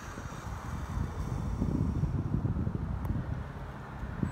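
Wind buffeting the microphone: a gusty low rumble with a faint hiss above it.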